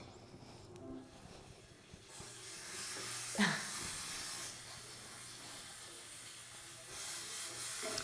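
Cubed potatoes frying in a hot pan on a gas stove, with a sizzling hiss that swells about two seconds in and again near the end. A brief sharp sound comes about three and a half seconds in as the potatoes are moved with a spatula.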